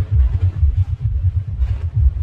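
Sound-system subwoofers pumping loud, rapid deep bass pulses, about four or five a second, with little sound above the low end.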